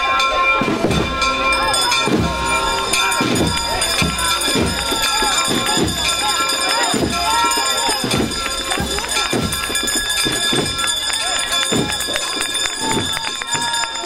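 Hand bells ringing continuously over a crowd's voices.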